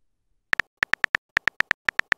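Phone keyboard typing clicks from a texting-story animation: a quick run of about a dozen short, crisp key taps, roughly seven or eight a second, starting about half a second in as a text message is typed.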